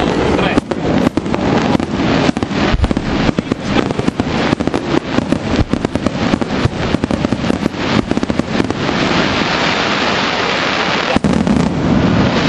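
Aerial fireworks shells bursting in quick succession, a dense run of bangs and pops that merges about three-quarters of the way in into a steady, unbroken rush of crackling noise.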